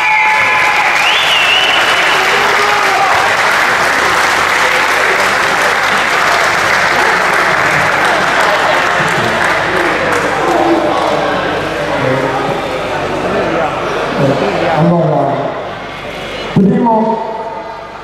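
Audience applauding, loud for the first half and thinning out over the second, with scattered voices coming through as it dies away.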